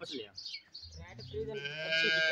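A cow mooing: one long call starting about one and a half seconds in, after a few faint sounds.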